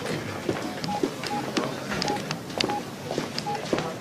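Computer keyboard keys clicking irregularly as a name is typed into a search, with short electronic beeps sounding between the keystrokes.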